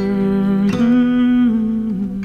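A man humming a wordless melody over fingerpicked acoustic guitar: two long held notes, the second stepping down in pitch near the end.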